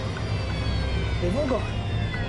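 Steady low rumble of jet airliner engines, with a high whine slowly falling in pitch as the engines run down after flaming out in volcanic ash. A voice speaks briefly about a second and a half in.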